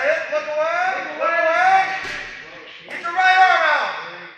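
People yelling encouragement in long, high-pitched shouts that swing up and down in pitch, with a short lull about two and a half seconds in before another loud shout.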